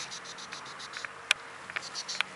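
Insects chirping in the grass, a quick run of short high-pitched pulses, with one sharp click a little past halfway.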